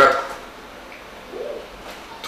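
A man's speech trailing off at the start, then a quiet pause with one short, faint voiced sound about a second and a half in.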